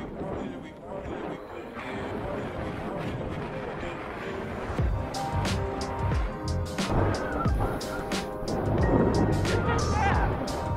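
Background music. A steady drum beat comes in about halfway through.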